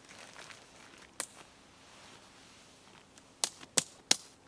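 Tent-body clips snapping onto the tent pole: a single click about a second in, then two sharper snaps close together near the end.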